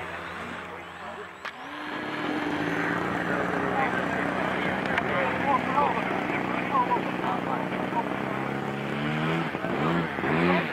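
Radio-controlled model airplane flying overhead, its motor note rising about two seconds in, then holding steady, and shifting in pitch near the end as the plane passes, with people talking in the background.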